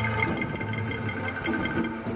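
Angklung ensemble sounding a held chord as a sustained shaken tremolo of bamboo tubes, with a few sharper accents about every half second.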